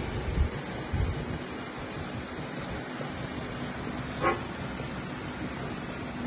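Steady rumbling background noise with two low thumps in the first second as the attachment's steel plates are handled, and a short squeak about four seconds in.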